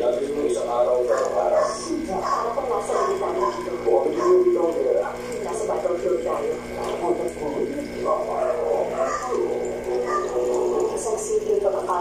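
Continuous speech, a voice talking throughout with no clear words.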